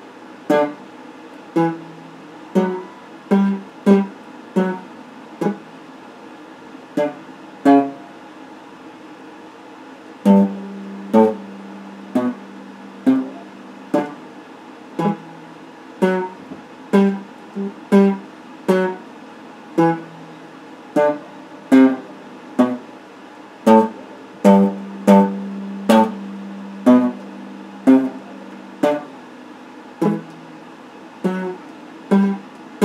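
Electric guitar played as single picked notes, one or two a second, in a slow, uneven melodic line, with a pause of about two seconds near the middle and a few notes left ringing longer.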